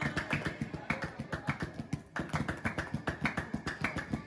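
A didong group's rhythmic percussion: many hands clapping and beating small pillows in a fast, even beat of about six strikes a second, with no singing over it.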